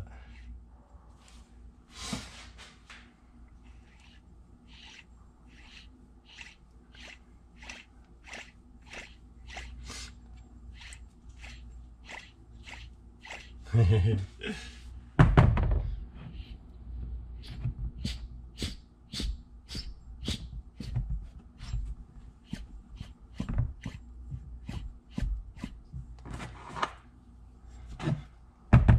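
Short light clicks at a steady pace of about two a second as an aluminium AISIN AMR300 supercharger is handled and worked on with a wrench, with one heavier thunk about fifteen seconds in.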